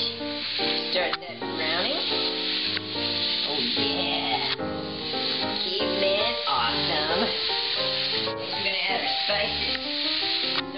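Background music, with ground beef sizzling in a frying pan on a gas burner as the raw meat goes into the hot pan.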